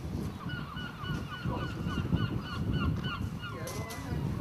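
A bird calling in a quick run of about ten short honking notes, roughly three a second, over a low rumble of wind on the microphone.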